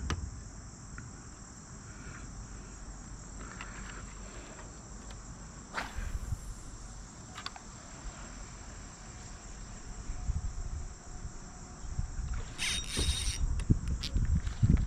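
Steady, high-pitched insect chorus from the surrounding marsh and woods, with a brief rush of noise about six seconds in and a longer, louder one near the end.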